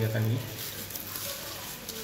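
Soft rustling of boiled orange peel sliding from a metal strainer into a plastic blender jar, faint and with no distinct thuds, over a steady room hiss.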